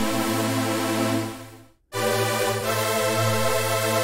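Serum software-synth trance pad of two detuned unison saw oscillators, eight voices each, in the style of a Roland JP-8000 supersaw, playing two long held notes; the first fades out smoothly on its release before the second begins. The sound is nice and wide.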